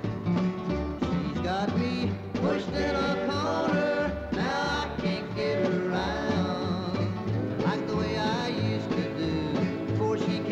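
Country song played by a band of acoustic guitars, mandolin, banjo, upright bass and drums, with a steady bass beat and sliding lead lines.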